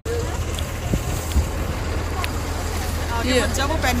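Steady low rumble of street traffic, with people's voices starting near the end.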